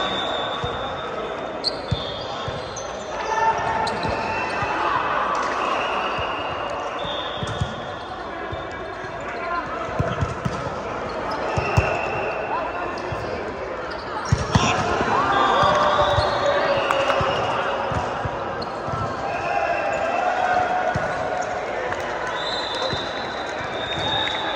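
Volleyball being played on an indoor court: many short, high sneaker squeaks on the synthetic floor, and a few sharp smacks of the ball being struck, the loudest about twelve and fourteen and a half seconds in.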